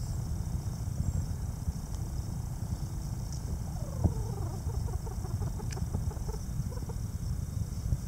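Mountain quail giving a soft run of quick, short low calls, about five a second. The run starts near the middle, the first notes falling in pitch, and fades out near the end. A steady low rumble and a single sharp click near the middle lie under it.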